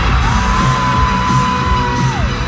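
Loud live pop band in an arena, heard through a phone's microphone, with heavy drums and bass; over it a single voice holds one long high note for nearly two seconds.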